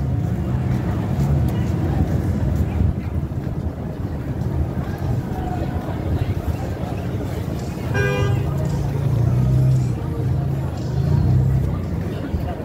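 City street traffic with a steady low rumble, and a short car horn toot about eight seconds in.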